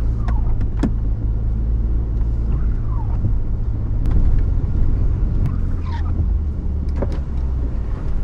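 Inside the cab of a truck driving slowly over a snowy dirt road: a steady low engine and tyre rumble, with a few light clicks. A short falling squeak, the windshield wiper sweeping across the glass, comes about every three seconds.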